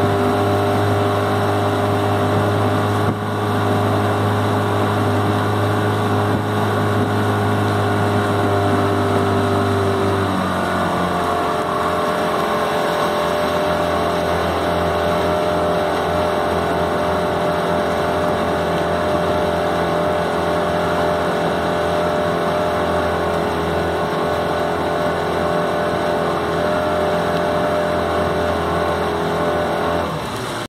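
Outboard motor of a motorboat running steadily at cruising speed, its engine note dropping slightly lower about ten seconds in.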